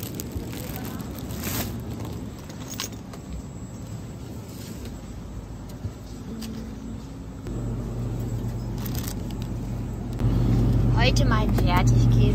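Supermarket ambience: a steady low hum that grows louder about halfway through and again near the end, with a few light crinkles of plastic produce bags being handled in the first seconds. A voice comes in near the end.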